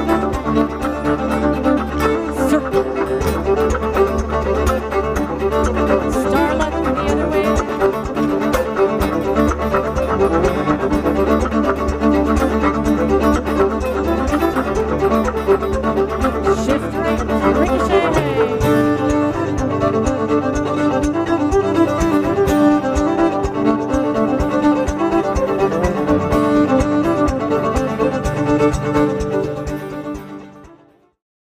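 Live contra dance music: a fiddle-led tune over a steady bass accompaniment. About two-thirds of the way through, the low bass line drops out and the tune changes. The music fades out at the very end.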